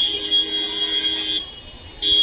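A steady high-pitched buzzing tone with a lower steady hum beneath it, cutting off about one and a half seconds in and starting again at the very end.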